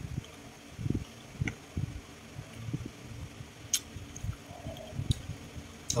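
A man chewing a mouthful of cheese close to the microphone: soft, irregular low mouth sounds with a few faint clicks.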